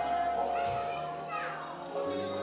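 A held final note of the live band fades out while a young child's high voice calls over it, about half a second to a second and a half in.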